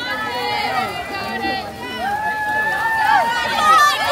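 People's voices talking and calling out, some words drawn out, throughout.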